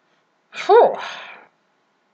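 A person sneezing once, about half a second in: a sudden loud burst with a brief falling voiced part that trails off within a second.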